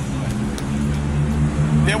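Steady low hum of a motor vehicle engine running in street traffic, a speaking voice coming in near the end.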